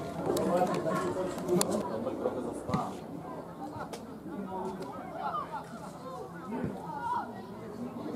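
Indistinct voices of several people calling and talking, with a few short sharp knocks in the first few seconds.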